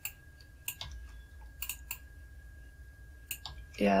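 Computer mouse clicking: about five sharp, irregularly spaced clicks, over a faint steady high-pitched whine.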